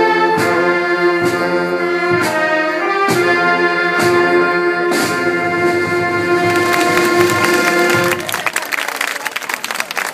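Wind band of clarinets, saxophones, trumpets, trombones and tuba playing over a steady bass-drum beat about once a second, ending on a long held chord about eight seconds in. Applause follows the final chord.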